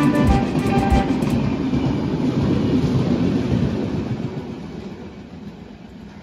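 Express train's coaches rolling past at speed, wheels clattering in a regular rhythm, with the rumble fading steadily as the train moves away. Background music plays over it for about the first second and then stops.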